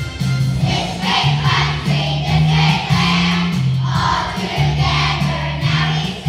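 Children's choir singing over an instrumental accompaniment with a stepping bass line; the voices come in about half a second in.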